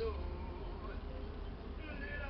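A steady low electrical hum under a faint music soundtrack, with a few soft held notes. A fuller musical phrase of several held notes starts near the end.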